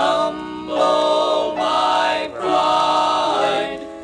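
Male gospel vocal quartet singing a hymn in close four-part harmony, holding long chords.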